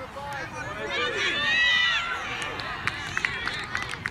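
Several voices shouting across a soccer field, loudest in a high, drawn-out shout about a second in. Near the end comes a quick run of sharp taps.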